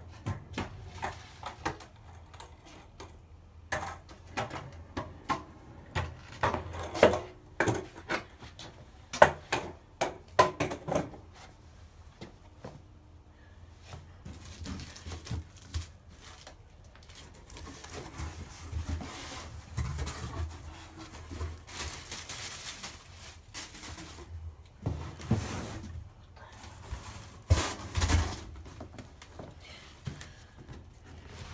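A cardboard shipping box being grabbed, ripped open and rummaged through, with scraping and rustling cardboard and packing material through the second half. Before that comes a run of sharp knocks and clicks for the first ten seconds or so.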